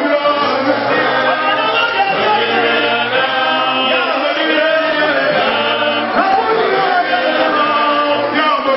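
Many voices of a congregation chanting together, led by men on handheld microphones, a continuous overlapping mass of voices.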